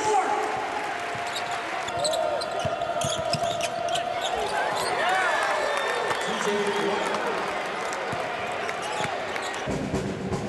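Basketball game sounds on a hardwood court: the ball bouncing and short squeaks over arena crowd noise and voices. Music comes in right at the end.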